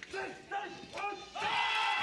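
Bobsleigh crew's three short rhythmic start calls at the push handles, then the two-man bob pushing off over the ice, with a steady ringing tone beginning about halfway through.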